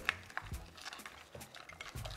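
Faint wet squishing and a few light clicks as gloved hands toss raw crab legs and shrimp in a glass bowl.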